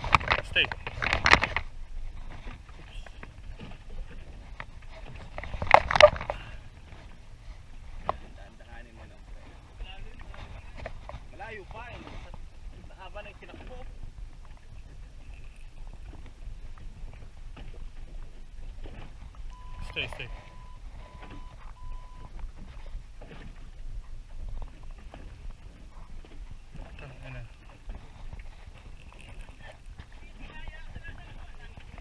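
Voices on a small boat: loud exclamations near the start and again about six seconds in, then quieter, indistinct talk over steady low wind and water noise. Three short electronic beeps at one pitch sound around twenty seconds in.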